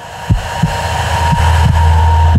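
Soundtrack sound design: a low thump repeating about three times a second, with a deep drone swelling in about halfway through and a thin steady high tone above.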